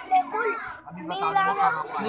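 A child's voice spelling out Arabic letter names aloud in a sing-song recitation, one syllable after another.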